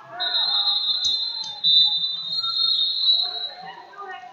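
A long, high-pitched steady tone, broken briefly about a second and a half in, over the chatter of voices in a large hall.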